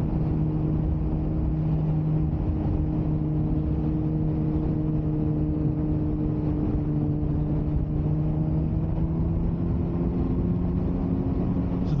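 Engine of a 2009 Suzuki GSX-R 600 inline-four sportbike, heard from on board while cruising at a steady pitch that rises gently over the last few seconds, over a steady rush of wind and road noise.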